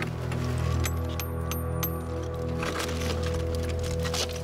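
Background music with a steady low drone, over which a hammer strikes a chisel into cooled lava rock several times in quick succession, about four knocks a second or so in, with a few more near the end.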